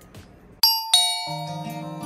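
A bright two-note chime, the second note lower, rings out about half a second in. Background music follows.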